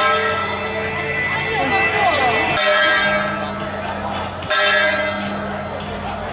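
A large metal gong struck at the head of a temple procession: the clang of a stroke just before the start rings on, and it is struck again twice, about two and a half and four and a half seconds in. Each stroke rings on with a sustained metallic hum. Crowd chatter runs underneath.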